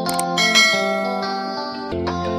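A click and then a bright bell-chime sound effect ringing out and slowly fading, over background guitar music.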